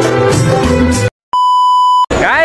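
A film song plays and cuts off abruptly about a second in. After a moment of silence, a steady, loud single-pitch test-tone beep of the kind that goes with TV colour bars sounds until the end.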